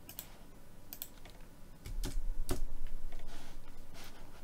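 Computer keyboard and mouse clicks: a few separate keystrokes and clicks as a dimension value is typed in and entered. A low thump comes about two seconds in.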